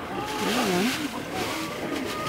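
Rustling and shuffling of a plastic sack of rice hulls being handled and emptied, loudest in the first second and a half, with a faint wavering low tone under it.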